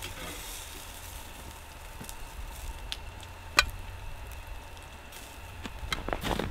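Pork steaks sizzling on a charcoal kettle grill, a low steady sizzle and crackle, as they are lifted off with tongs. A few sharp clicks stand out, the loudest about three and a half seconds in.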